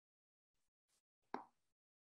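Near silence, broken once by a short soft pop a little past halfway through.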